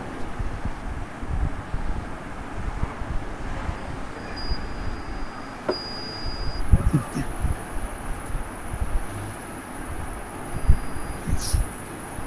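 Low rumbling background noise with scattered soft thumps, picked up by an open microphone on a video call.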